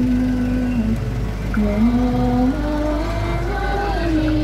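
Voices singing a slow melody in long held notes that step up in pitch, over a steady low engine rumble.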